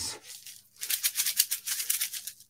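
A pair of Zumba toning sticks, maraca-like weighted shakers, being shaken by hand. They give a fast, even rattle that starts about a second in.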